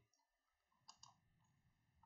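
Near silence, broken by two faint short clicks close together about a second in.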